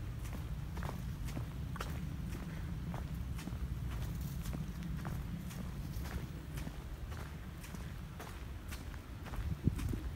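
Footsteps on a brick paver patio, a step a little under every second, over a steady low rumble, with a couple of louder knocks near the end.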